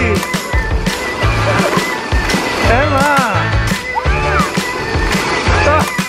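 Background music with a steady beat, over the rolling rumble of a roller slide's rollers as riders go down it.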